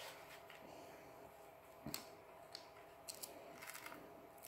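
Near silence broken by a few faint clicks and rustles of handling as a plastic Star Wars Force Link wristband is fitted onto a wrist. The clearest click comes about two seconds in, and a quick cluster of small clicks follows near the end.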